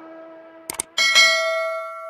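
Subscribe-button animation sound effects: two quick mouse clicks, then a bright notification-bell chime that rings out and fades.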